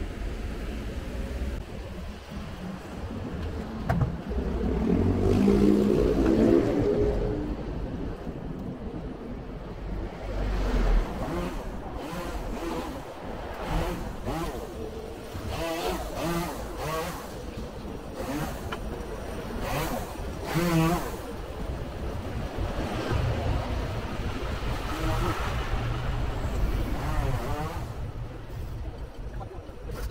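Roadside traffic: cars and motorcycles passing on a multi-lane road, with one louder swell as a vehicle goes by a few seconds in.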